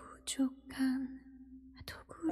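A few short whispered words with sharp breathy sounds, over a low steady tone lingering from a chime.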